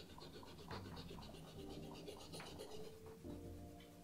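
Faint scratchy rubbing of a solvent-dampened cotton pad on a sneaker's midsole, wiping off old paint.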